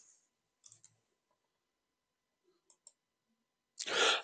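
Two pairs of faint, short computer mouse clicks, about two seconds apart, against near silence.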